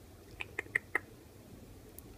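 Hermit crab tearing at wet moss as it eats, heard as four short, sharp clicks in quick succession in the first half of the clip.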